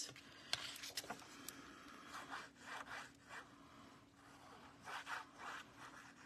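Faint rubbing and sliding of paper and cardstock being handled on a craft mat, with a few light ticks in the first second or so and soft strokes later as liquid glue is dabbed onto the back of a die-cut paper panel.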